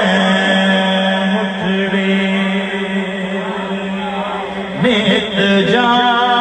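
A man singing a Saraiki Sufi kalaam in long, drawn-out melismatic phrases over steady sustained tones through a PA system, with a louder new phrase coming in about five seconds in.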